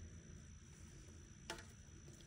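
Near silence: faint room tone with a low hum and a thin, steady high-pitched whine, broken once by a single soft click about one and a half seconds in.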